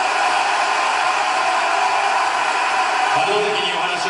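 Large arena crowd applauding steadily.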